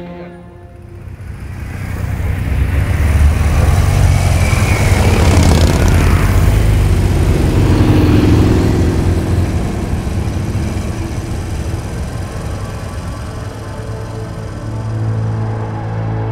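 A group of touring motorcycles riding past, their engines building to loudest mid-way and then fading as they ride off, with background music underneath.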